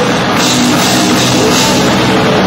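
Live rock band playing loud, with drum kit and cymbal crashes over sustained guitar chords.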